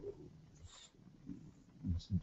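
A pause in a man's speech: faint room tone with a brief soft hiss a little after the start, and his voice coming back in near the end.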